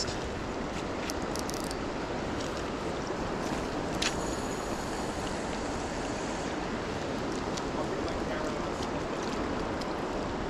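River current running steadily over a shallow gravel riffle, with one sharp click about four seconds in.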